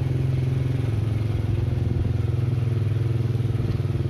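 Single-cylinder four-stroke engine of a Supra Fit 110cc reverse trike running steadily under way at an even engine speed, a constant low hum without revving.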